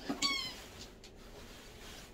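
A pet's squeaky toy gives one short, high squeak that falls slightly in pitch, about a quarter second in.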